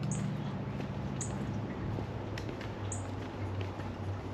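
A small bird giving three brief, high chirps spread across a few seconds, over a steady low hum.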